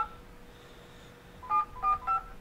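Telephone keypad dialing tones: one short two-tone beep right at the start, a quiet pause, then two more beeps about a third of a second apart near the end, as a phone number is keyed in.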